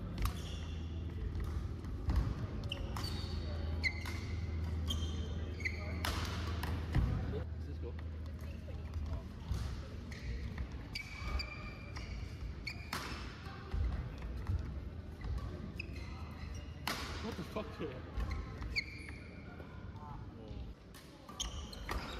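Badminton rally in a sports hall: sharp racket strikes on the shuttlecock at irregular intervals, with players' shoes squeaking briefly on the court floor.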